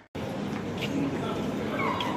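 Busy shopping-mall background of distant voices and footsteps, with two short high yelps, one about a second in and one near the end.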